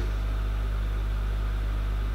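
A steady low hum with faint hiss, no speech and no separate events: the recording's constant background noise.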